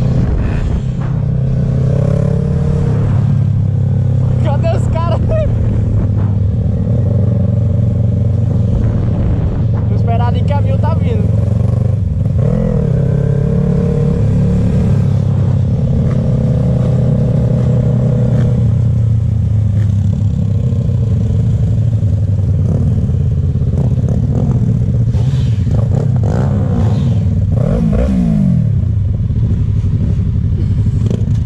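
Onboard sound of a Yamaha MT-03 motorcycle being ridden through traffic: the engine runs steadily under load with wind rushing over the microphone. Near the end the engine note falls away as the bike slows.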